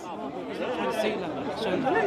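Overlapping chatter of several people talking at once in a crowd, without one clear voice.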